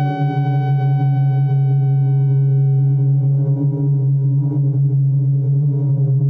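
Ciat-Lonbarde Tetrax four-oscillator analog synthesizer, played through a Chase Bliss Mood MkII pedal, holding a steady low drone. A thin higher tone above it fades away over the first few seconds.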